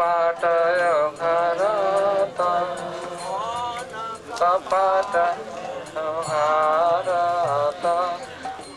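A man singing a devotional bhajan into a microphone, in long, ornamented melodic phrases with short breaks for breath, over faint regular clicks.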